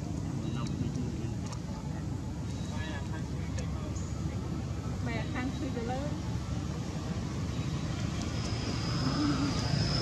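A steady low background rumble, like distant traffic, with a few faint, short wavering calls around the middle and a thin high whine coming in near the end.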